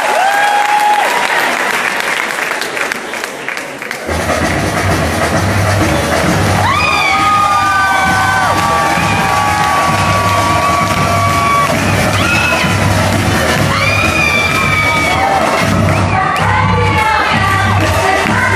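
Audience cheering and whooping, then about four seconds in music starts with a steady pulsing bass beat, and singing comes in a couple of seconds later.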